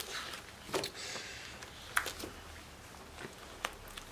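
Pages of a large colouring book being turned by hand: a soft papery swish about a second in and a few light flaps and taps of the pages.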